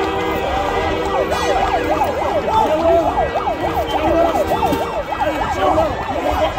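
A siren in a rapid yelp, its pitch swinging up and down several times a second. Underneath it, long steady horn blasts are held and fade out about five seconds in.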